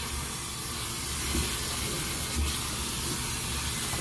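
Bathroom sink faucet running, its stream splashing over a forearm and hands as they are rinsed off in the basin: a steady hiss of water.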